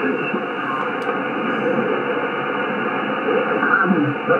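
Shortwave transceiver's receiver audio on the 20 m band in single sideband: a steady hiss of band noise, thin and narrow like a telephone line, with faint, garbled voices of distant stations underneath.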